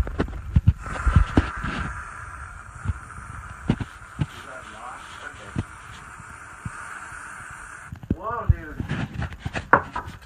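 Aerosol whipped-cream can spraying into a mug: a steady sputtering hiss that lasts about seven seconds and stops abruptly, after a few knocks of handling at the start. A voice is heard near the end.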